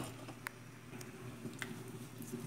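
Cooked pumpkin being mashed in a metal pot with a potato masher: faint squishing with three light clicks spread through it.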